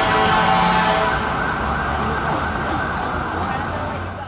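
City street noise with an emergency-vehicle siren sounding, holding a steady pitched tone for about the first second, with people talking.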